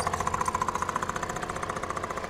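Small moped engine running with a fast, even chug as it rides off, fading gradually.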